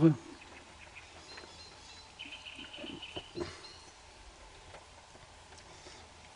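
Mostly quiet background with a faint bird call lasting about a second, starting about two seconds in.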